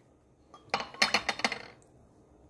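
Upturned drinking glass set rim-down into a plate of water, clinking against the plate in a quick run of light knocks starting about half a second in and lasting about a second.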